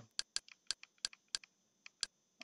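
A run of sharp, separate key or button clicks, about six or seven over two seconds and unevenly spaced, each press stepping a menu list down one item.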